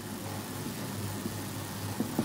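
Steady low background hum with an even hiss, like a running fan or distant idling engine; no distinct marker strokes stand out.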